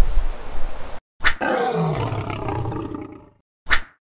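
An edited-in sound effect between cuts to dead silence: a sharp hit, then a low, falling, drawn-out growl of about two seconds that fades away, and a second sharp hit near the end. Before it, for about a second, the outdoor background of the camp site carries on.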